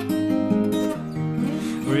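Eastman E1OM acoustic guitar fingerpicked in open E-flat tuning: a run of plucked notes ringing over low bass notes.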